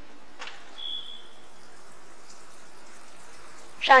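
Steady background ambience of an indoor diving pool hall, an even wash of water and room noise, with a click just under half a second in and a short high tone about a second in that fades away.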